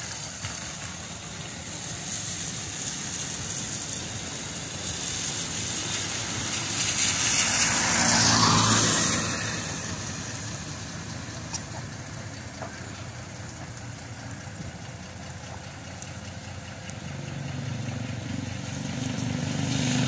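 A flatbed truck passing close on a wet road: its engine and tyre hiss swell to a peak about eight to nine seconds in and then fade. Another vehicle's engine grows louder near the end.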